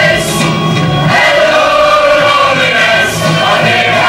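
Two women singing together into a handheld microphone over music, with more than one voice heard at once.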